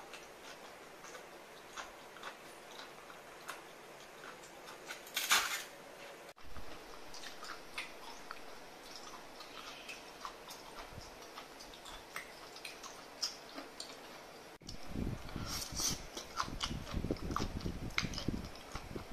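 Close-up eating sounds of cooked prawns: small clicks and crackles of shell and wet sucking as meat is drawn out of legs and shell pieces, with one louder burst about five seconds in. Near the end the chewing and biting become louder and denser.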